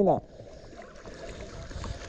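Sea water sloshing and lapping close to the microphone around a swimmer, a soft steady wash that grows a little louder near the end.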